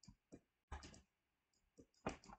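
Faint, irregular taps and clicks of a stylus writing on a tablet, with a quick cluster of them about a second in.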